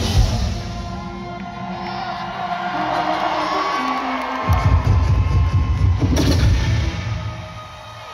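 Live hip-hop band music with crowd cheering: a loud hit at the start, a run of held notes stepping downward, then a heavy bass beat kicking in about halfway through.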